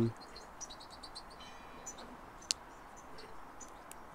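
Faint birdsong, scattered high chirps and a short trill, over quiet handling of paper cut-outs on a table, with one sharp tap about two and a half seconds in.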